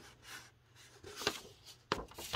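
Soft rustling of old paper being handled, with a sharper crackle as a page is flipped over near the end.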